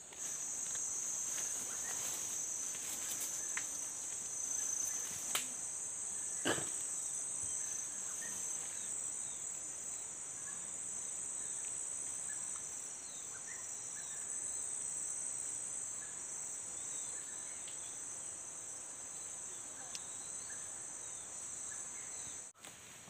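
Steady high-pitched chorus of forest insects, one continuous even buzz, with a couple of brief faint clicks about five and six seconds in.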